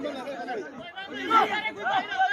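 Several people's voices overlapping, talking and calling out: spectator chatter.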